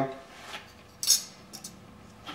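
An aluminum backing plate being set down on the base of an arbor press: a short, sharp metallic clink about a second in, with a couple of fainter taps of metal on metal.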